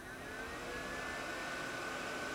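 A faint engine-like whine that falls slightly in pitch over the first second, then holds steady.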